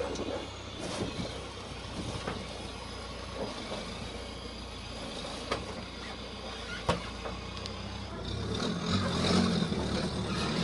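Sherp ATV's diesel engine running at low speed as the vehicle rolls slowly forward, getting louder over the last two seconds as it comes close. A few sharp clicks sound over it, the loudest a little before the end.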